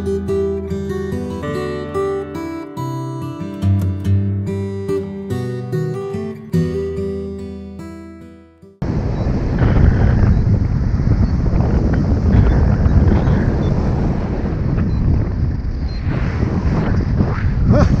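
Guitar music fades out about nine seconds in, then an abrupt cut to loud, steady wind rushing over the camera microphone of a paraglider in flight.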